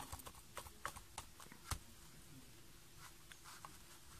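A quiet room with a quick run of faint, light clicks and taps in the first two seconds, then only faint room noise: handling noise from the recording being made.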